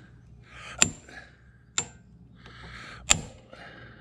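Three sharp hammer blows with a metallic ring on the end of a screwdriver set in a stuck handlebar control-housing screw, knocking it loose.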